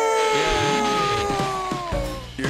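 A long, drawn-out note, slowly falling and fading, from the train puppet's voice carrying on from "All aboard!". Sliding whistle-like tones rise and fall across it with a hiss, a musical sound-effect flourish leading into a song.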